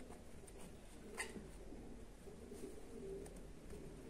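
Quiet room tone with faint, low, broken bird calls in the background, and one light tap about a second in.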